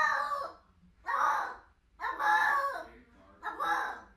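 A cat meowing loudly over and over: four drawn-out calls, about one a second.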